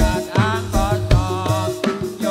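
Javanese jaran kepang dance music: a wavering melody over a steady beat of drum strokes, about three a second, with a low sustained bass note.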